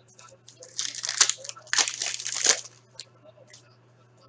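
Foil trading-card pack wrapper being torn open and crinkled, in two rustling bursts about a second and two seconds in, followed by a few light clicks of cards being handled.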